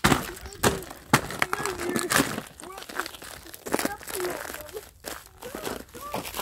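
Ice and frozen snow cracking and crunching underfoot as someone stamps to break the ice, with a series of sharp cracks, the loudest in the first couple of seconds. Short voice sounds come between the cracks.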